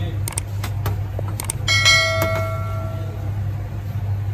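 Light clicks of a metal spoon, then a little under two seconds in one clear metallic strike that rings like a small bell and fades over about a second and a half, over a steady low machine hum.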